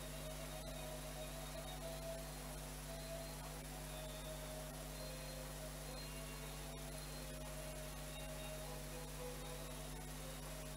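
Steady electrical hum with hiss, room tone of the recording, with a couple of faint ticks about half a second and about seven seconds in.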